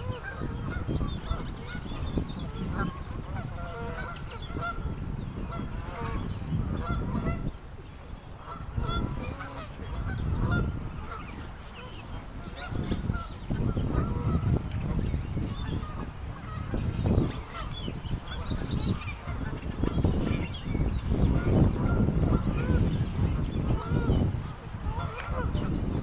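A flock of Canada geese honking repeatedly, many short calls overlapping, over a low gusty rumble on the microphone.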